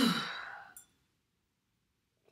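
A woman's heavy sigh with a voice in it, falling in pitch and lasting under a second.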